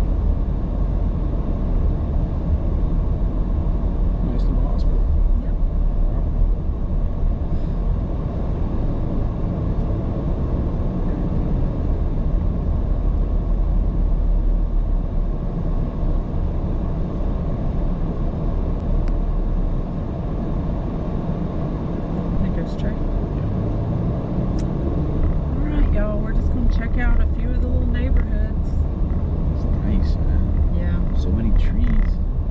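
A car driving, with a steady low rumble of road and engine noise.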